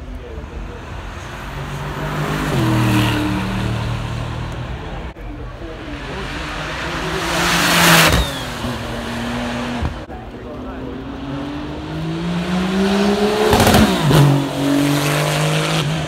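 Sports cars accelerating past one after another on a hill climb, their engine notes rising as they come. The loudest pass, about halfway through, is a Porsche 911 Turbo's flat-six sweeping by close. Another car passes near the end, its note dropping as it goes by.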